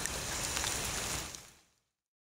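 Steady rain falling, with separate drops ticking now and then; the sound fades out to silence about a second and a half in.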